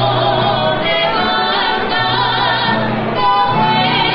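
A man and a woman singing a Navarrese jota in duet, holding long notes with vibrato, accompanied by acoustic guitar and accordion.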